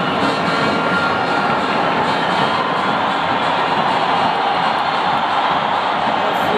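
Stadium crowd noise during a football match: a steady, loud roar of many voices with no single event standing out.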